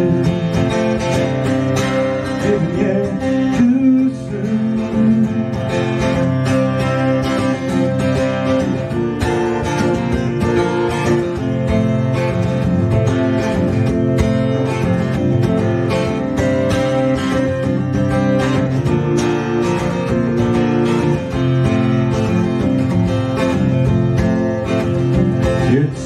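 Acoustic guitar strummed steadily as an instrumental passage between verses of a folk song.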